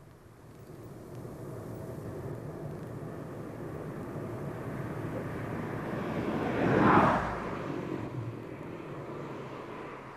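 An ICE high-speed train passing at speed: its noise builds for several seconds, peaks about seven seconds in, then fades.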